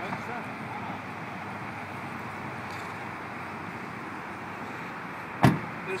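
A car door shut with a single loud thump about five and a half seconds in, over a steady background hiss: the driver's door of a 2010 Roush 427R Mustang closing.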